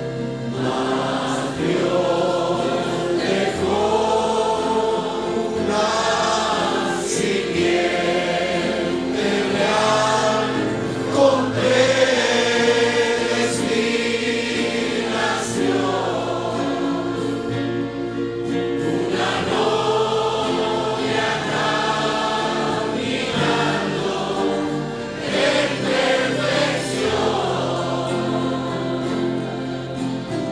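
Congregation singing a Spanish worship song together, many voices holding long sung phrases over steady low sustained notes.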